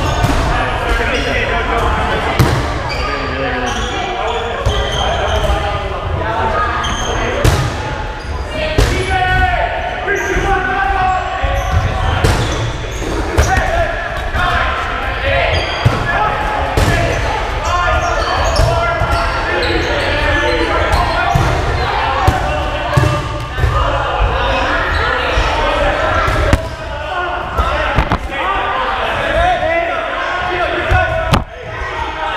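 Rubber dodgeballs repeatedly smacking and bouncing on a wooden gym floor and against players, many irregular impacts, mixed with players calling and shouting to each other, echoing in a large gym.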